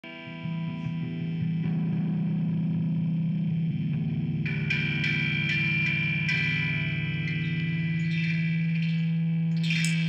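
Song intro on electric guitar through effects, held notes ringing over a steady low note; a higher line of notes joins about halfway, before any drums come in.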